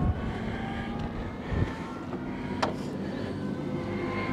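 A steady engine hum from another machine, not this car, under wind noise on the microphone, with a soft thump at the start and another about a second and a half in, and a sharp click about two and a half seconds in.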